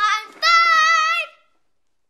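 A young girl singing out in a high voice: a short syllable, then one long high note held for nearly a second, ending about a second and a half in.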